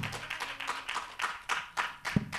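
Light audience applause: scattered hand claps after a speaker finishes.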